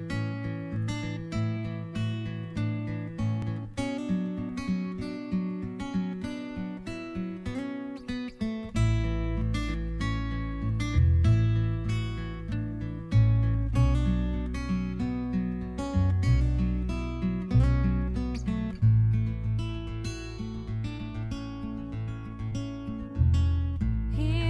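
Instrumental intro played on acoustic guitar, strummed in a steady pattern, with a low bass part joining about nine seconds in.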